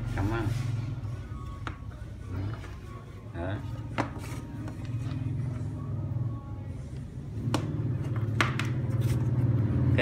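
A few sharp plastic clicks and knocks as plugs and leads are pushed into a small LCD monitor, over a steady low hum.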